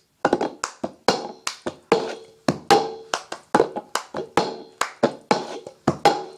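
Cup-song rhythm on a plastic cup: hand claps alternating with the cup being tapped, knocked and set down on the floor, a steady run of sharp hits about two to three a second, some with a short hollow ring from the cup.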